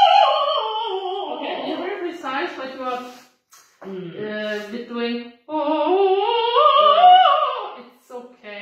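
A woman's voice singing a vocal exercise on vowels, gliding smoothly down in pitch without steps between notes. After a brief break about three and a half seconds in, it slides up and back down. This is legato siren practice, filling the space between the notes.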